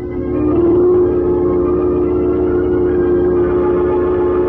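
A single sustained organ chord, held steady for nearly five seconds after a brief swell, then cut off: a musical bridge marking a scene change.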